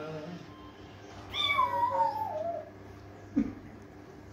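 The tail of a man's held sung note, then a cat meowing once, one long call that falls in pitch; a short thump near the end.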